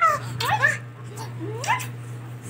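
Toddler's short, high-pitched squeals during play: several quick rising squeaks in the first second and another near the end, over a steady low hum.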